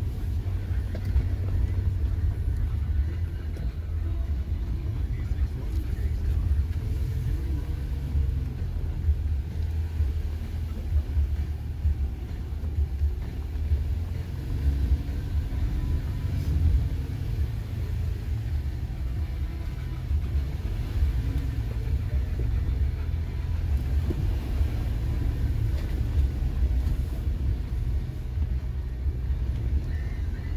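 Jeep Gladiator crawling slowly over a rocky trail, heard from inside the cab: a steady low engine and drivetrain rumble.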